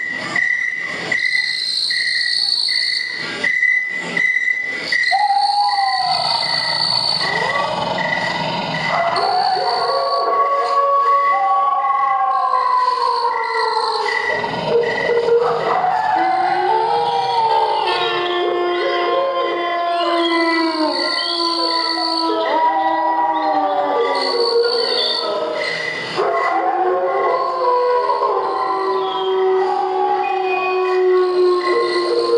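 Horror dance soundtrack over the hall speakers: an evenly pulsing high chirp like crickets, about two a second, runs throughout. Several sharp knocks fall in the first few seconds. From about six seconds in, long overlapping wails glide up and down over it.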